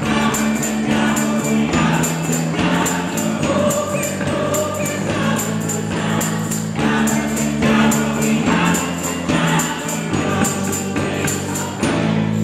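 Live band music: a tambourine keeps a steady beat, about two or three hits a second, over sustained low chords from accordion and cello.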